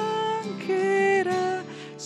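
A hymn sung by voices with guitar accompaniment: held notes that slide from one pitch to the next, with a short break between phrases near the end.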